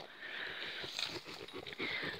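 Close, steady rustling from a buck goat nuzzling against the phone, its fur brushing over the microphone.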